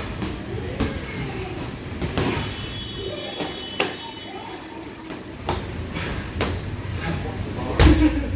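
Muay Thai pad work: irregularly spaced strikes smacking into the pads, about six in all, the loudest just before the end, over a steady low room hum.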